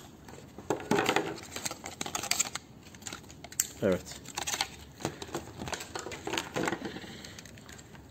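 Clear plastic packaging crinkling and rustling in the hands as a microphone's coiled cable and parts are unwrapped, with scattered small clicks from the handled pieces.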